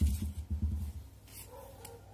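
Handling noise: dull low bumps and rumbling during the first second as the crochet work is moved about, then a faint drawn-out tone near the end.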